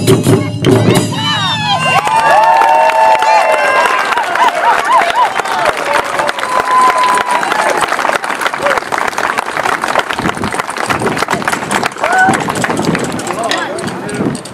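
Taiko drums ending a piece with their last strikes about a second in, followed by the audience applauding and cheering, with voices calling out over the clapping.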